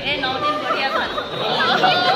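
Several people talking at once: overlapping chatter of women's voices in a room.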